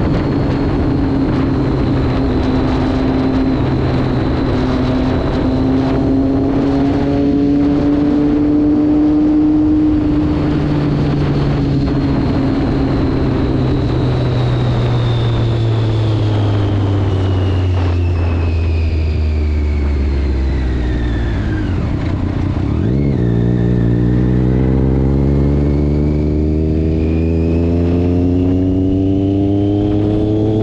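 Sport motorcycle engine heard from the rider's seat over wind and road rush. It holds a steady note at cruising speed, then falls in pitch for several seconds as the bike slows, breaks briefly at a gear change about three-quarters of the way through, and climbs again as it accelerates.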